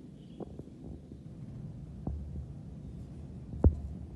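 Handling noise: a few soft knocks and bumps, the loudest near the end, over a low steady rumble.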